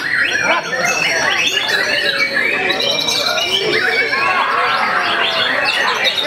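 Many caged white-rumped shamas (murai batu) singing at once, a dense, unbroken tangle of overlapping whistles, glides and rapid chattering phrases.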